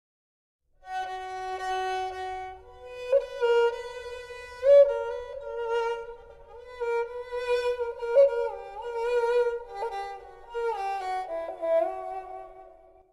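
Kamancheh (Persian spike fiddle) playing a solo bowed melody, entering about a second in, with slides and ornaments between long held notes.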